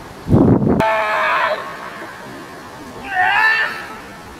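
A loud low thud about a third of a second in, followed by a high, wavering cry, and a second high cry near the end, during protection-dog bite work.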